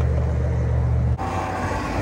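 Wind rumble on the microphone and road noise from a moving Talaria Sting R electric bike. A little past a second in, the heavy low rumble cuts off abruptly, leaving lighter noise and a faint steady whine.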